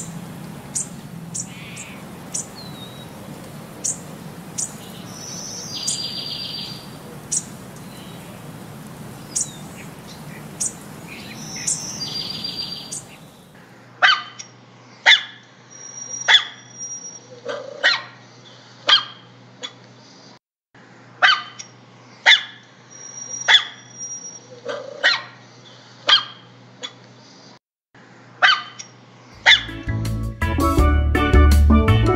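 A puppy barking in short, repeated barks about once a second at its own reflection in a mirror. This starts after a cut about halfway through; before it there are only sharp clicks and a few short high chirps over a low hum.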